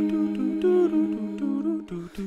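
Layered a cappella vocal loops of hummed "doo" syllables played back from a Boss RC-505 looper: a steady low held note under a moving hummed melody. Near the end the layers briefly drop out.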